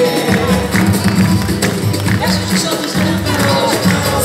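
Live samba band playing: steady hand-drum and tambourine beat under plucked cavaquinho and guitar, with a voice singing over it.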